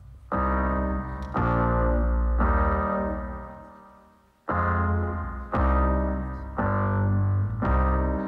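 Loopstation performance playing back looped, keyboard-like chords over a deep bass, a new chord about once a second. The chords fade away to near silence in the middle, then come back about four and a half seconds in.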